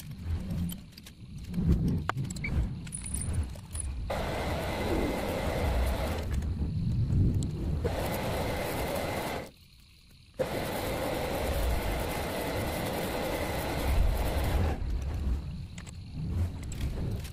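Metal lathe running, turning a white plastic workpiece in its three-jaw chuck. It is a steady machine noise with a faint high whine. It starts about four seconds in, drops out abruptly for under a second near the middle, and stops shortly before the end. Before it starts there is some light handling clatter.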